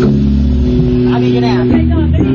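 Rock band playing sustained electric guitar and bass chords into a heavily overloaded recording, with a voice rising over the band about a second in.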